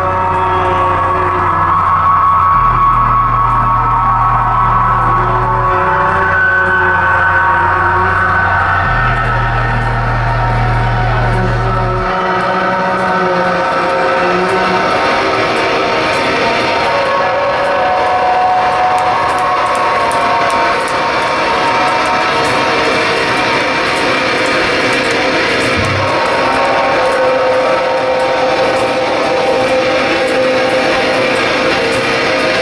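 A live metalcore band playing loud through the venue's PA, heard from the crowd. Long ringing chords are held over deep bass notes that change every three seconds or so. The bass drops away about twelve seconds in while the ringing tones carry on.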